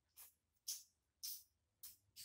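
Faint scratchy rustling of synthetic braiding hair as a braid is picked apart by hand: four short swishes about half a second apart.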